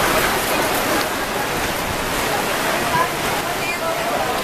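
Heavy rain pouring down steadily in a loud, even hiss, heard from under a tent canopy, with faint voices.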